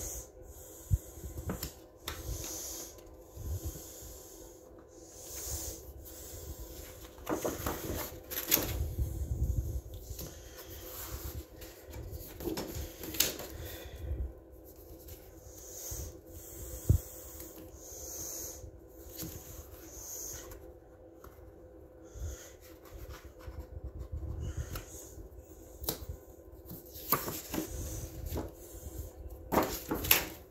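Pages of a spiral-bound coloring book being handled and turned: on-and-off paper rustling and rubbing with scattered soft knocks, over a faint steady hum.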